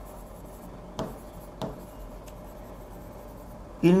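Stylus writing on an interactive display's screen: faint scratching, with two sharp taps about a second in and half a second later.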